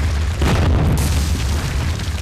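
Booming sound effect of a wall blasting apart: a deep rumble with a sudden crash of breaking rubble about half a second in.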